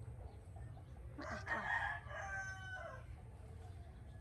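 A rooster crowing once, starting about a second in and lasting about a second and a half, its last part drawn out and falling slightly, over a steady low rumble.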